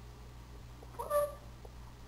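A house cat gives one short meow about a second in, with a few faint taps around it.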